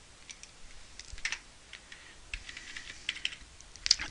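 Light, irregular keystrokes on a computer keyboard, a scattering of separate taps that come more thickly in the second half.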